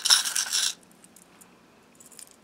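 Small metal charms jingling and clinking in a small metal bowl as a hand rummages through them, stopping abruptly under a second in.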